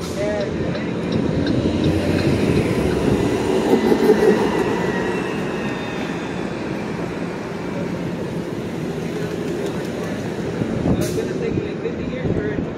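City street traffic: a city bus driving past with a steady rumble, and a faint high whine for a couple of seconds around the middle.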